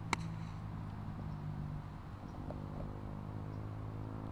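A single crisp click as a diamond-faced sand wedge strikes a golf ball on a short pitch, just after the start, followed by a faint steady low hum.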